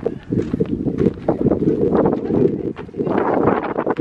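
Wind buffeting the camera's microphone: a loud, uneven low rumble that rises and falls in gusts.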